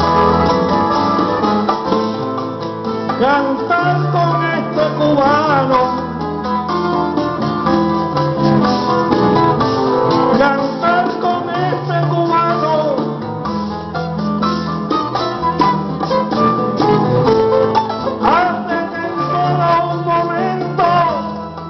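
Live acoustic folk band of guitars and other plucked string instruments playing a steady accompaniment. A melody line slides and wavers in pitch a few seconds in and again near the end.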